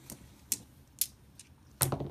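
Several sharp, separate clicks about half a second apart, small hard game dice knocking on a tabletop as they are rolled for the next play.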